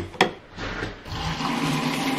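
A sharp click near the start, then a shower running: a steady rush of water with a low hum underneath, building up about a second in.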